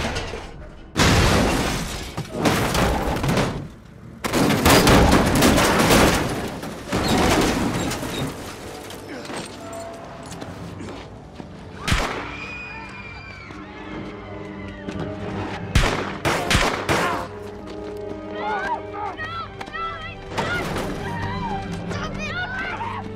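Action-film soundtrack: loud crashes and rushing noise for the first seven seconds, then orchestral score under a few sharp single hits and shouting voices.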